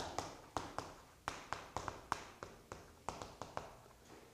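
Chalk writing on a chalkboard: a quick, irregular run of sharp taps and short scratches, about four or five a second, as letters are written.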